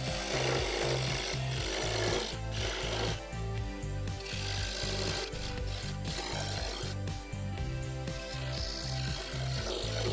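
A parting tool cutting into wood spinning on a lathe, a scraping hiss that comes and goes in several passes, over background music with a steady bass beat.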